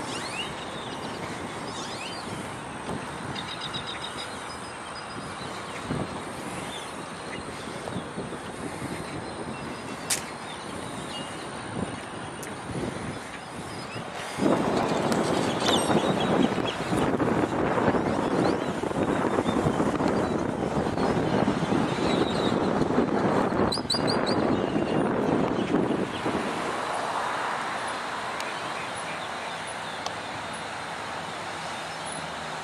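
Roadside ambience with traffic noise and a few short bird chirps. About halfway through, a louder rush of noise sets in; it lasts roughly ten seconds, then falls back.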